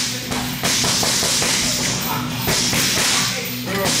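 Two grapplers working on a padded cage mat, with light slaps and thumps of bodies and gloved hands over a steady hiss of gym noise.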